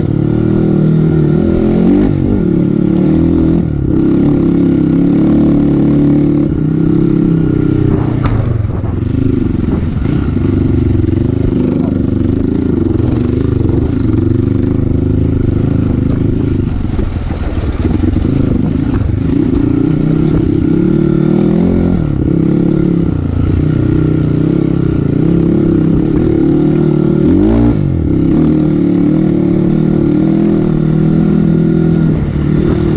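Kawasaki KLX dirt bike's single-cylinder engine running under load, revving up and down several times as the throttle is opened and closed, with a sharp knock about eight seconds in.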